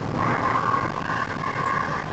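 In-cabin sound of a methane-fuelled car driving at moderate speed: steady engine and road noise, with a steady whine over it.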